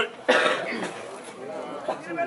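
Human voices: a sudden loud vocal burst about a quarter second in, then speech-like calling.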